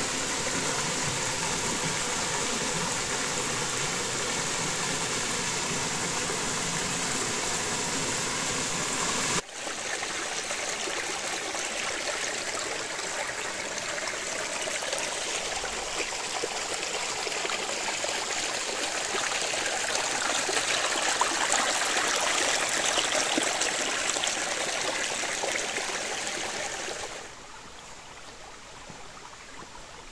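Steady rush of running water: a thin waterfall splashing into a pool, then, from about nine seconds in, a shallow forest stream running over rocks, loudest a little past the middle. Near the end it drops to a quieter stream sound.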